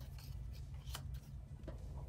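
Faint rustling and light clicks of paper player cards being handled and swapped on a tabletop game board.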